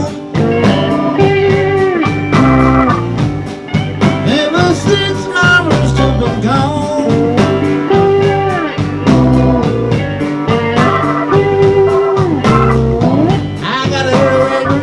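Live blues band playing an instrumental passage between sung lines: electric guitar over a steady drum beat with keyboard, the guitar notes bending in pitch.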